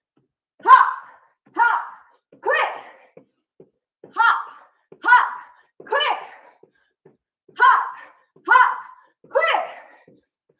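A woman's voice calling short rhythmic workout cues in sets of three words, repeated three times with a short pause between sets.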